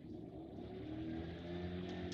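An engine running steadily in the background, a low hum with a few held tones that grows slowly louder.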